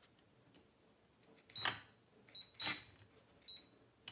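DeWalt cordless driver run in four short bursts, starting about a second and a half in, driving screws into a metal shelf frame.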